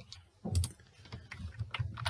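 Faint clicks of a computer keyboard being pressed: a single click about half a second in, then a quicker run of clicks near the end as the slide is advanced.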